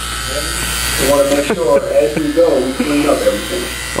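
Oster Fast Feed hair clipper running with a steady buzz, with voices talking and laughing over it for most of the stretch.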